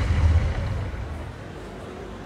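Tail of an explosion sound effect from the skit's soundtrack: a deep rumble that stays loud for about half a second, then fades away.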